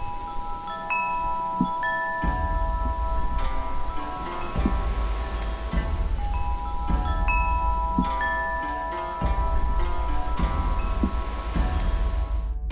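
Chimes ringing: clear metal tones struck one after another, overlapping and fading slowly, with the same sequence coming round again about six seconds later. A low steady rumble sits underneath from about two seconds in.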